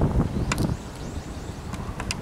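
Wind buffeting the microphone: an uneven low rumble, heaviest in the first second, with a sharp click about half a second in.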